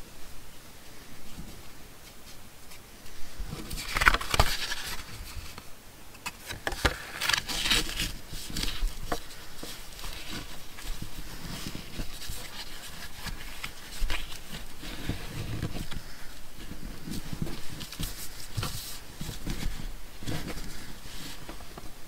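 Hands handling strips of sari silk and a paper tag card on a wooden tabletop while knotting the fabric through the card's holes: intermittent rustling and scraping with a few light taps, busiest about four seconds in and around the seventh and fourteenth seconds.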